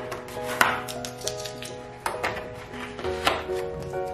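Background music of soft held notes, with a few sharp, irregular crackles of a large sheet of drawing paper being lifted and handled; the loudest comes a little over half a second in.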